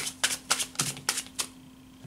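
A deck of cards being shuffled by hand: a quick run of sharp flicking snaps for about a second and a half, then it stops.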